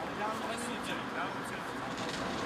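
Indistinct talk among several people, over a steady outdoor hiss.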